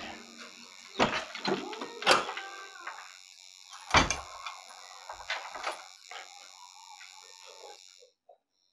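A scattered series of knocks and thumps from a person moving about a small room and settling into an office chair, the loudest a heavy thump about four seconds in.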